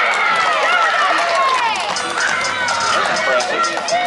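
A group of high voices shouting and cheering together, many overlapping yells at once, keeping up loudly throughout, in reaction to a hit in a softball game.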